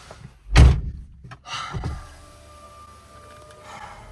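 A car's driver door shut with a single heavy thunk about half a second in, followed by a few softer knocks.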